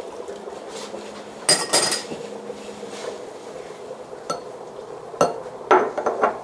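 Clinks of a china saucer and a spoon: a quick cluster of ringing clinks about one and a half seconds in, then two single sharp clicks and a short rattle near the end, over a faint steady hum.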